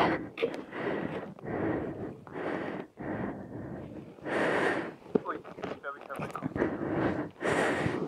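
Mostly speech: a man talking, broken by short bursts of rushing noise on the microphone.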